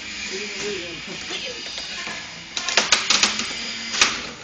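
Antweight combat robots clattering against each other in the arena: a burst of rapid sharp clicks, around ten a second, starting about two and a half seconds in, over faint voices.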